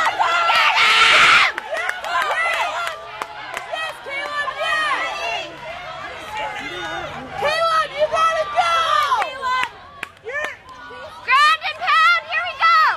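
Spectator crowd cheering loudly, the roar cutting off about a second and a half in, then many overlapping voices shouting and calling out at different pitches.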